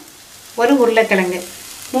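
A woman speaking Tamil narration in short phrases, with only a faint hiss in the pauses.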